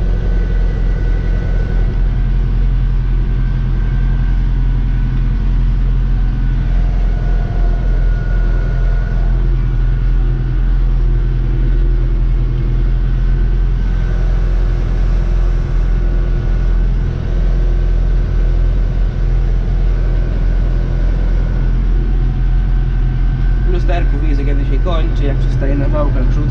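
Tractor engine running steadily, heard from inside the cab, while it drives the trailing silage wagon's unloading floor conveyor through the PTO shaft; a steady high whine sits over the low engine drone.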